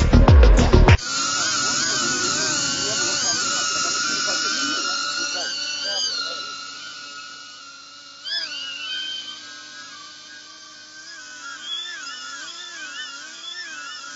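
Music cuts off about a second in. After that, a DJI Avata FPV drone's propellers whine, the pitch wavering up and down as the motors change speed. The whine fades after a few seconds and swells briefly partway through.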